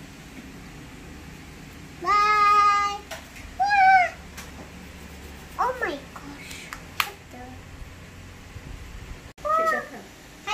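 Four short high-pitched vocal calls: the first held level for about a second, the next rising and falling, the third sliding steeply down, the last brief near the end. A single sharp click sounds between them.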